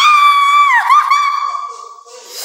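A high-pitched scream: one long held shriek that swoops up at the start, dips briefly in pitch a little under a second in, and fades away near the end.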